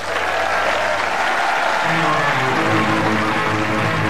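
Audience applauding as a rock band starts playing; about halfway in, guitar and bass notes come in over the applause.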